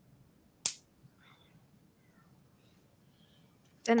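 Near silence broken by one sharp click about two-thirds of a second in, with a few faint murmurs after it.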